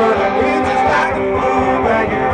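Live rock band playing loud and steady: strummed electric guitar over drums.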